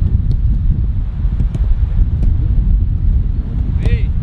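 Wind buffeting the microphone, a loud, steady low rumble, with a few faint sharp knocks of a football being kicked.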